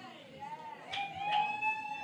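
One long, high-pitched cry from a person in the room, rising and then held for about a second and a half before trailing off: a raffle winner reacting to hearing the winning number called.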